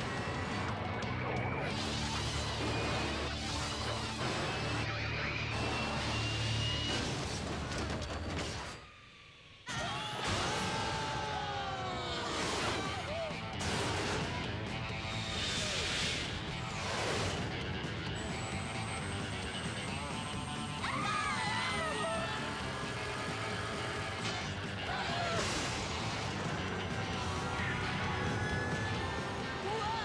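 Cartoon soundtrack: lively background music mixed with sound effects of a runaway souped-up engine and crashes. A brief near-silent gap comes about nine seconds in, followed by gliding, falling effect tones.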